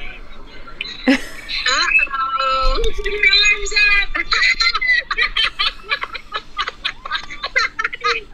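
Several people shrieking and laughing as a log flume boat goes down its steep drop. The cries are high and drawn out, some held for about a second, and choppy laughter runs through the middle.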